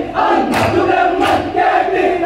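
A group of men chanting in chorus on a steady held pitch while they dance, with two sharp hand claps about three-quarters of a second apart.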